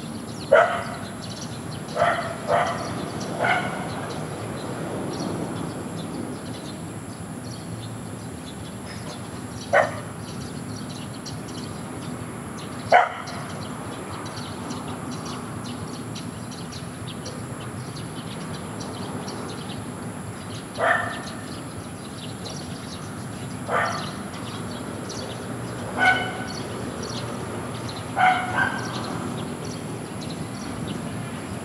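A dog barking: about ten short single barks and small clusters at irregular intervals, over a steady low background noise.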